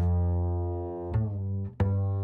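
Virtual electric bass from the UJAM Virtual Bassist Mellow plugin playing single plucked notes with nothing else behind them: one note held about a second, then two shorter notes.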